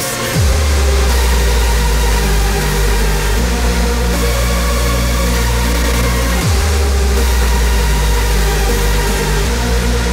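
Raw hardstyle electronic music played loud: a deep held bass that dives sharply in pitch about half a second in and again about two-thirds of the way through, under a stepping low synth line.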